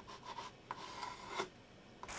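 Coloured pencil scratching across paper in a few quick drawing strokes, stopping about one and a half seconds in.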